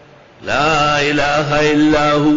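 A man chanting Quranic Arabic in a drawn-out, melodic recitation style, with long held notes that rise and fall. It begins about half a second in.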